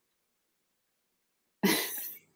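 Silence, then near the end a sudden short, breathy burst from a person's voice, fading over about half a second.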